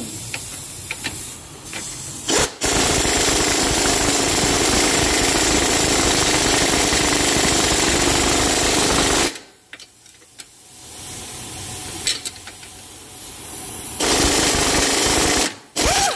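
A 3/8-inch pneumatic air gun runs on the lower control arm bolts, giving them their final tightening with the car resting on its wheels so the bushings are not left in a bind. It runs in one long burst of about seven seconds, then after a short pause at a lower level, and gives another short full burst near the end.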